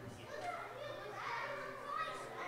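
Indistinct overlapping chatter of people waiting for a service, with children's higher-pitched voices calling out among the adults'.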